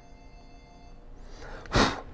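A man's sigh: one short, loud breath out near the end, over faint background music.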